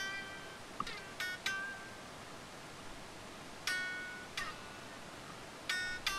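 High single notes picked on a Les Paul-style solid-body electric guitar, heard quietly and clean from the strings themselves rather than through an amp. About seven notes come in short groups with pauses between, each ringing briefly, as a phrase is worked out by ear.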